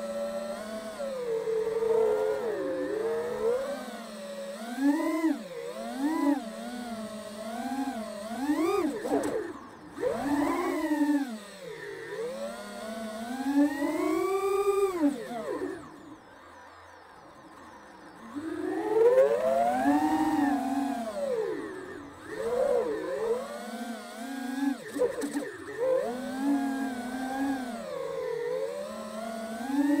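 Radio-control model plane's motor and propeller heard from on board, the pitch rising and falling constantly with the throttle. About halfway through the power drops right back for about two seconds, then winds up again.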